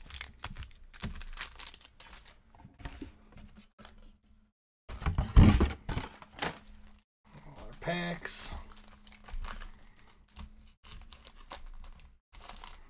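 Foil-wrapped trading-card packs crinkling and rustling as they are handled and torn open, in a run of short crackles with a louder one about five seconds in.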